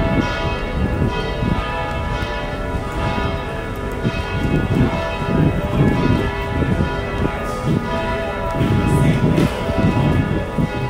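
Church bells ringing, many overlapping tones sounding continuously over low city street rumble.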